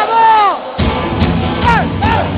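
A long falling shout, then a live metal band kicks in sharply about three quarters of a second in, with loud drums and bass.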